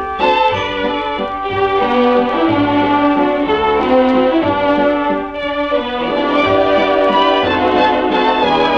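Instrumental orchestral passage of a 1948 dance-orchestra recording of a waltz, played without singing between vocal verses.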